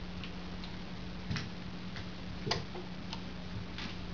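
Steady electric guitar amplifier hum with a handful of light, irregular clicks and taps from handling the guitar and its gear. The loudest click comes a little past halfway.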